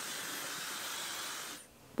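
Dyson Supersonic hair dryer running on wet hair: a steady hiss of blown air with a faint high whine. It cuts off about one and a half seconds in.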